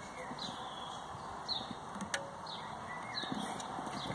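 Steady background hiss with a bird giving short falling chirps about once a second, and a single sharp click about two seconds in.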